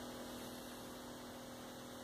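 Steady low electrical hum with faint hiss: room tone.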